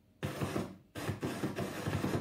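A 'Jupiter moon sound' clip played back from a device: a harsh, rapidly pulsing noise likened to a monster, in two stretches with a brief break about a second in.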